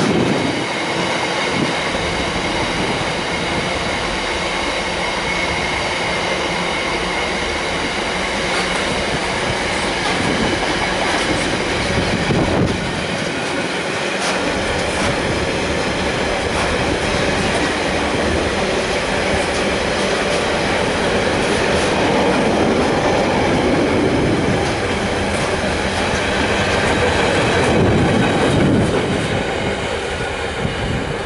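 Container freight train wagons rolling steadily past on the rails, a continuous loud run of wheel and wagon noise with a thin high ringing tone riding on it.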